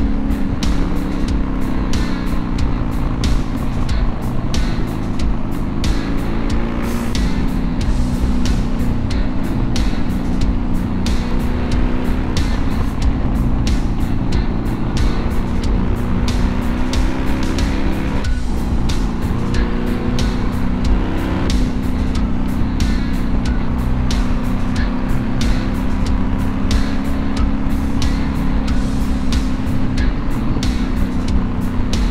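BMW R1100GS air/oil-cooled boxer twin running steadily at road speed, with wind noise, under background music with a steady beat.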